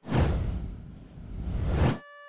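A whoosh sound effect for an on-screen transition: a rushing noise that starts suddenly, dips about halfway, swells again and cuts off abruptly.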